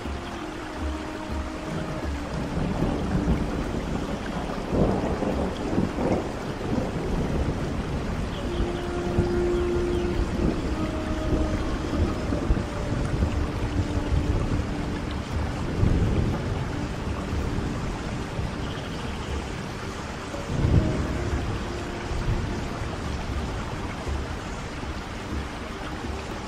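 Steady rain with three low rolls of thunder, the last and loudest about five seconds before the end, under soft Native American flute music playing long held notes.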